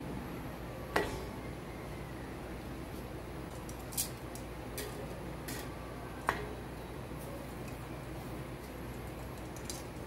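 Metal kitchen tongs clicking against a nonstick pan three times as a pita bread is laid on it to heat, over a steady low hum.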